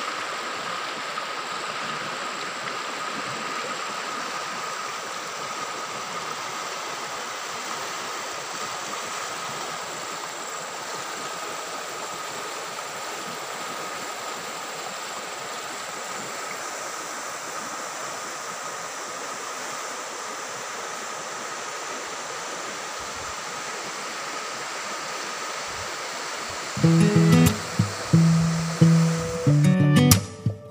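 Steady rushing of a fast-flowing, muddy river in flood. About 27 seconds in, acoustic guitar music starts and is the loudest sound.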